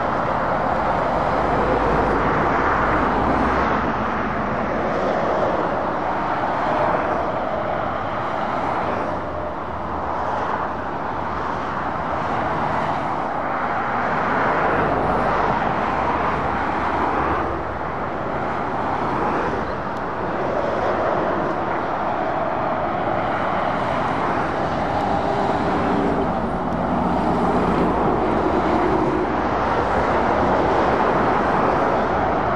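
Heavy lorries and cars passing on a dual carriageway: a continuous rush of tyre and engine noise that swells and fades as each vehicle goes by.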